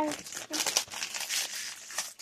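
Foil wrapper of a baseball card pack crinkling in a run of small crackles as it is torn open by hand.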